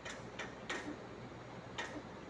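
Sharp ticks from welding work on a large steel penstock pipe, four in two seconds, over a steady faint hiss.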